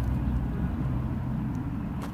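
Low, steady outdoor background rumble, with a faint hum partway through.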